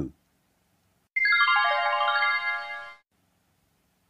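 Short musical transition sting: a quick cascade of bright, ringing chime-like notes entering one after another, mostly stepping downward, starting about a second in, sustaining together for about two seconds and then stopping. It marks the break between one vocabulary entry and the next.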